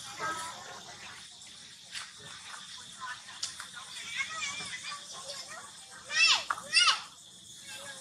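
Long-tailed macaque squealing: soft wavering high calls, then two loud, high-pitched squeals a little over six seconds in, each rising and falling in quick arcs.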